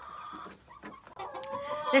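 Several hens clucking close by.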